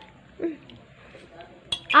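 A spoon clinking against a dish, a few quick clinks near the end.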